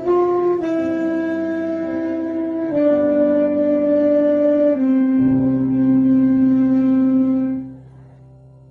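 A solo wind instrument playing a slow melody in long held notes that step downward over a backing accompaniment, closing on a long final note that fades out shortly before the end.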